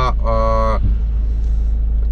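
A steady low rumble inside a parked car's cabin, with a man's drawn-out hesitation vowel in the first second.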